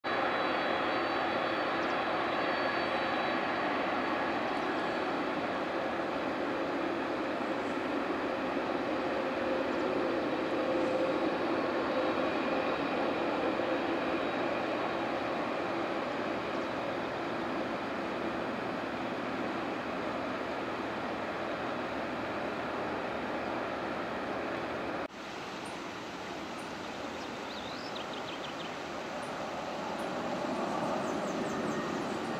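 Jet airliner engines running at low power on an airfield: a steady rushing noise with a faint high whine. It breaks off abruptly for a moment near the end, then goes on slightly quieter.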